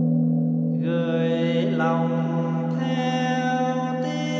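A large temple bell, struck just before, rings on with a steady low hum while a voice begins chanting about a second in, holding long drawn-out notes that change pitch twice.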